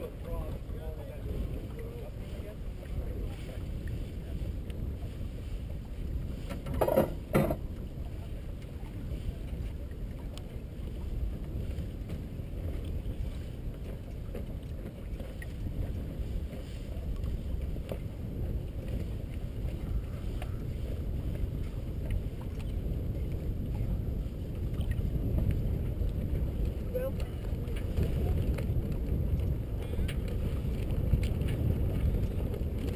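Steady wind buffeting the microphone and water rushing along the hull of a sailing yacht under way, growing a little louder toward the end. Two sharp knocks come close together about seven seconds in.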